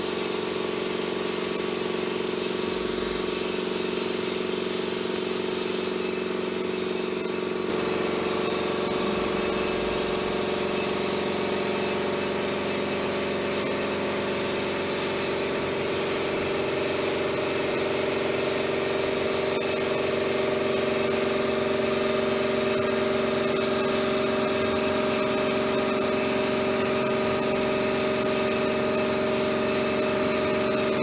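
A steady, engine-like drone of several held tones, thickening about eight seconds in and gaining a lower tone later on.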